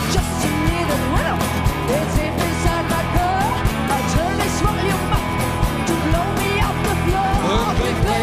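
Live rock band playing an instrumental passage: a steady drumbeat and bass under a lead line that bends and slides in pitch.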